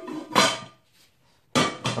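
Cookware clattering as a frying pan and its glass lid are set down on the stove: a short sharp clatter about half a second in, then quiet.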